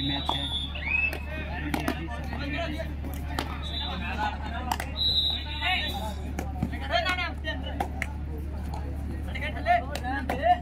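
Players' and onlookers' voices calling and shouting during a kabaddi raid, with a few short high squeaks, over a steady low hum.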